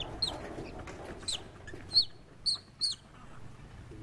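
An animal's short, high-pitched squeaks, about five in three seconds, each falling in pitch; the middle one is the loudest.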